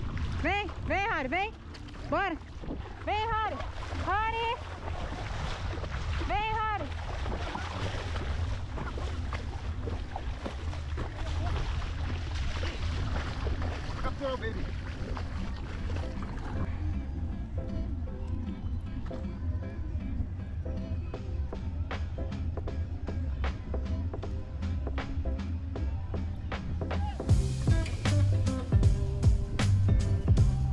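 Wind buffeting the microphone over sloshing shallow water, with a string of short rising-and-falling vocal calls in the first seven seconds. Music comes in near the end.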